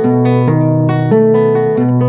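Classical guitar playing the milonga accompaniment at speed: a fingerpicked arpeggio, a bass string followed by notes on the higher strings (strings 5, 2, 4, 1, 3, 2, 1), in a steady rhythm.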